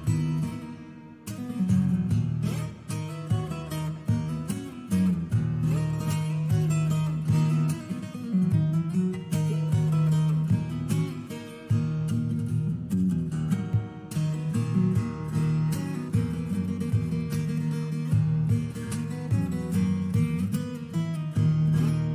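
Solo acoustic guitar played fingerstyle: a fast plucked melody over held, shifting bass notes, with many crisp note attacks.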